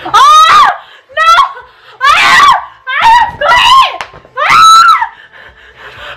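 Two women screaming in a string of about six short, high-pitched shrieks, a disgusted reaction to a foul-tasting jelly bean.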